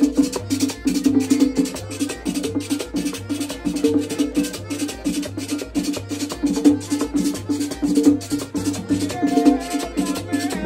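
Live merengue típico (perico ripiao) played on a button accordion, a two-headed tambora drum and a metal güira, with the güira scraped in a quick, even rhythm of about five strokes a second over the accordion's melody and the tambora's beat.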